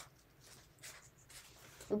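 Faint, short scratchy rustles of folded origami paper being handled, a few separate strokes. A spoken word begins right at the end.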